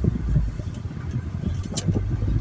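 Inside a moving car's cabin: a steady low rumble of tyres on the road and the engine, with a brief faint tick near the end.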